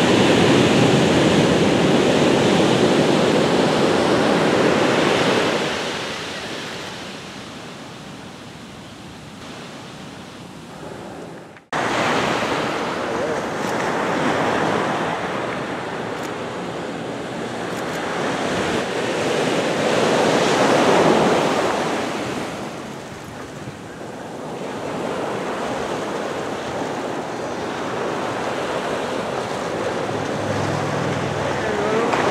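Ocean surf on the beach, a steady rushing that swells and fades in slow surges, loudest at the start and again about twenty seconds in. The sound drops out abruptly for a moment about twelve seconds in.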